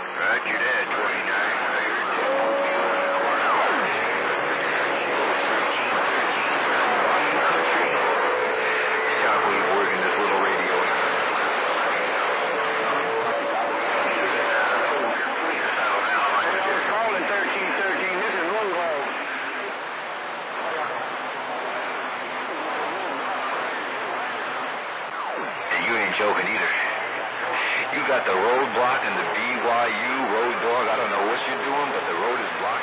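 CB radio receiving skip on channel 28: garbled, unintelligible voices under heavy static, with a steady whistle through the first half and a clearer voice near the end.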